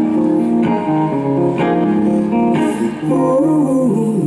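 Live song: an acoustic guitar strumming chords about once a second over sustained notes, with a male voice singing a gliding line in the last second.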